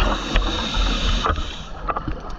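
Scuba breathing through a regulator, heard through an underwater camera housing: a rushing, rumbling burst of air and bubbles lasting about a second and a half, then dying down, with a few sharp bubble clicks near the end.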